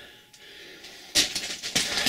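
Footsteps crunching over loose rock rubble, with stones clinking against each other, starting suddenly about a second in.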